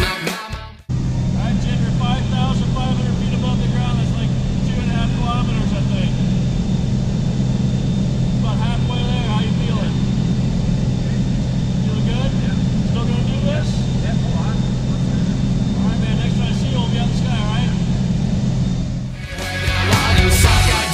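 Steady engine and propeller drone of a small single-engine plane heard inside the cabin during the climb, with faint voices under it. Music cuts off under a second in and comes back in the last second.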